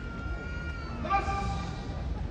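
A sumo referee's (gyoji's) high-pitched, drawn-out call to the crouching wrestlers during their pre-bout face-off. A thin held note slides slightly down, then a louder, fuller held note comes about a second in, over a steady crowd murmur.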